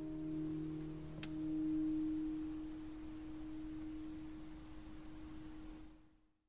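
Closing notes of a fingerstyle acoustic guitar ringing out. A held chord dies away, and a last clear, almost pure note is plucked about a second in, swells and slowly fades.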